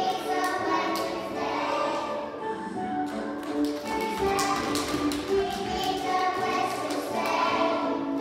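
A group of young children singing a song together with musical accompaniment, with some scattered hand claps.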